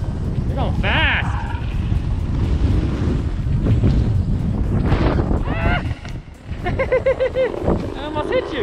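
Wind rumbling on the microphone of a camera carried down a ski slope by a moving snowboarder, with the board sliding over snow. Short voice calls break in about a second in and again near the end.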